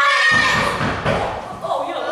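Children's voices with a heavy thud about a third of a second in, its low rumble dying away over the next second.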